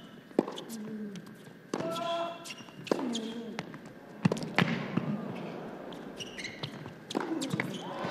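Tennis rally on an indoor hard court: racket strings striking the ball back and forth, roughly a second or more apart, with a short grunt from a player on some of the shots.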